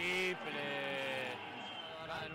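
A male basketball commentator's drawn-out shout: a short loud cry, then one long held call of about a second that slowly falls in pitch.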